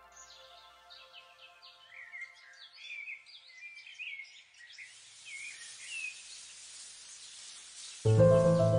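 Natural ambience of many birds calling, with short chirps and brief gliding calls in quick succession. A steady high hiss joins about halfway through, while a soft music bed fades out in the first second or two.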